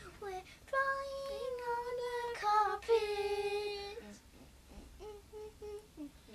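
A boy singing without words, holding long drawn-out notes in the middle, then several short notes near the end.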